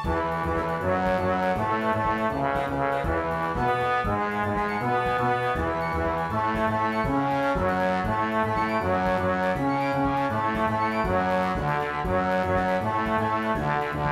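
Symphony orchestra music with the brass section prominent: sustained, changing chords over a steady pulse of short accented notes.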